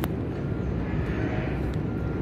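Steady rumble of distant engine noise in the open air, from traffic or a passing aircraft, with a single sharp click just as it begins.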